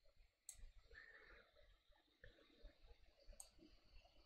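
Near silence, with a few faint clicks of a computer mouse, one about half a second in and a couple near the end.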